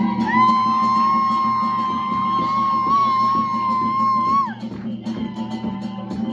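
Live band music with drums, congas, keyboard and guitar. Over it, a voice holds one long high note for about four seconds, sliding up into it and dropping off at the end. The band carries on after the note.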